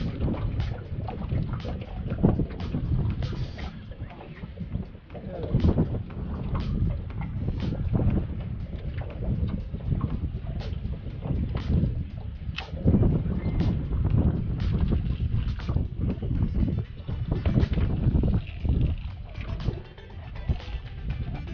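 Wind buffeting the microphone as a steady low rumble, with irregular sharp slaps of small waves against an aluminium boat hull, roughly one a second.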